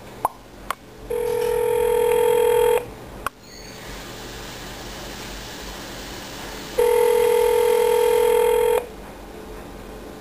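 Telephone ringback tone heard from a cordless phone handset while an outgoing call rings: two steady rings, each about two seconds long and about four seconds apart, with line hiss between them and a few clicks near the start.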